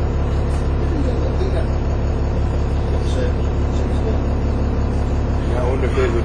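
Dennis Trident 2 double-decker bus's diesel engine idling steadily, heard from inside the bus as a deep, even hum.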